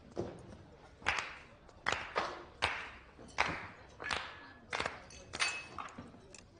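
Meat cleaver chopping a roast duck on a wooden board: a run of sharp chops at a steady pace, about one every three-quarters of a second.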